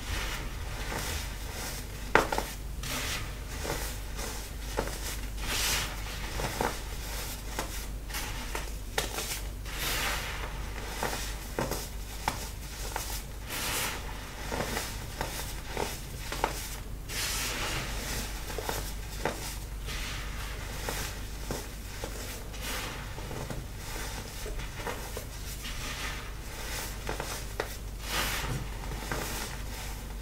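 Hands squeezing and kneading a heap of baking soda: a continuous run of soft, irregular crunches as the powder packs and crumbles between the fingers, with one sharp click about two seconds in.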